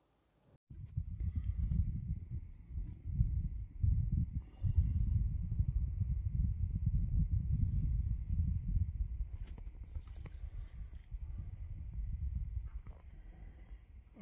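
Wind buffeting the microphone, a gusting low rumble that starts suddenly under a second in and rises and falls unevenly. There are a few faint clicks about ten seconds in.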